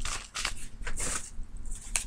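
Plastic sample packet crinkling and rustling as it is handled, in a run of short crackles with a sharper one near the end; the chewable tablets inside are crushed to powder.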